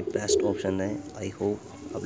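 Domestic pigeons cooing: a run of short, low calls one after another.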